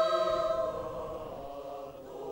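A mixed choir of men and women singing a held chord that fades away over about the first second and a half.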